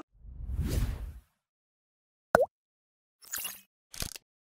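Sound effects of a TV channel's logo sting: a swelling low whoosh in the first second, a sharp hit about two seconds in, then two short swishes near the end.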